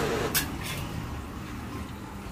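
Steady low rumble of road traffic or an engine running nearby, with one sharp click about a third of a second in.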